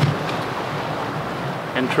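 Steady rushing noise of wind and waves at sea, with a brief click at the very start and a voice coming in near the end.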